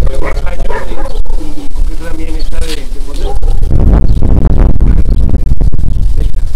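Indistinct speech from the meeting, with a steady low rumble underneath.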